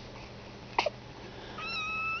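A kitten calling: a short chirp about a second in, then a thin, high mew held at a steady pitch.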